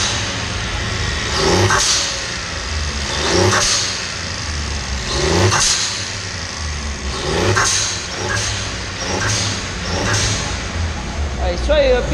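Turbocharged Volkswagen up! 1.0 TSI three-cylinder engine blipped over and over, about every two seconds, each blip ending in a sharp hiss as the open intake filter and the relief valve vent the boost.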